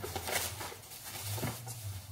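Bag rustling: a few short scratchy rustles as items are rummaged for in a bag, over a steady low hum.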